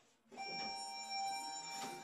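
An OTIS ReGen elevator's electronic signal: one steady beep held about a second and a half, followed by a brief knock near the end.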